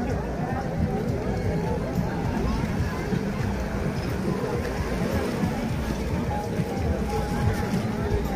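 Busy beach ambience: a crowd's background voices and small waves washing onto the shore, under a steady low rumble.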